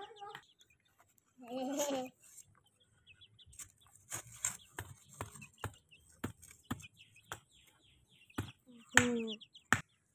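Young chickens peeping in short high cheeps as they forage, with a pitched call about a second and a half in and a run of sharp clicks through the second half.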